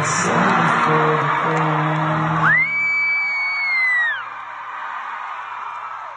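Live band holding out the last notes of a song over loud crowd noise, the music stopping about two and a half seconds in. A single long high-pitched scream from a fan close by then shoots up, holds for about a second and a half and drops away, leaving quieter crowd cheering.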